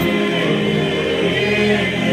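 Men's voices singing together a cappella in harmony, held sustained notes over a steady low bass voice.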